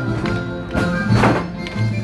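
Basque folk dance music: a melody over a steady low drone, with a heavy thud a little past a second in.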